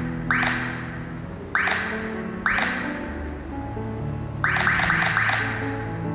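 Background music, over which come short, quickly fading clicks as the arrow buttons on a sat nav touchscreen are pressed: one just after the start, two more over the next two seconds, then a quick run of four about four and a half seconds in.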